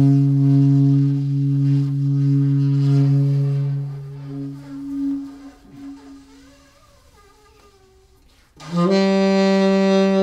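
Alto saxophone playing solo: a long, steady low note that fades and wavers out about five seconds in, then after a short quiet gap a new, slightly higher sustained note starts near the end.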